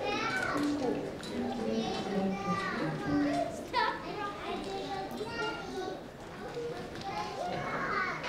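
Many children's voices chattering at once, an overlapping hubbub with no single voice standing out.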